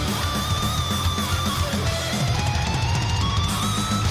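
Live heavy metal band playing: a chugging electric guitar riff over drums, with a sustained guitar line held above it that climbs in pitch in the second half.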